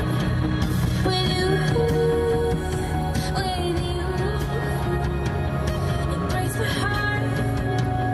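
Music playing on a radio: a melody over a steady bass line.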